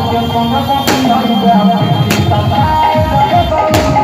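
Loud Indian dance music played over a truck-mounted DJ sound system, with sharp percussion strikes and deep bass beats coming in several times a second from about halfway through.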